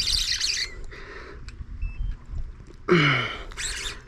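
Birds chirping in the background, with a short voiced exclamation that falls in pitch about three seconds in.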